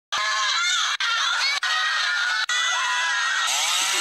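A woman screaming in high, wavering cries, cut by a few very brief dropouts.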